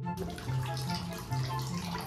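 Water running steadily in a bathroom, starting suddenly just after the beginning, with background music of low held notes underneath.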